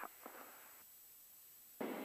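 Near silence with a faint steady hiss, a pause between the pilots' remarks; a voice trails off just after the start and speech begins again near the end.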